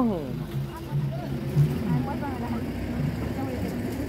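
Quiet, low voices talking in brief, broken phrases over a faint low background rumble.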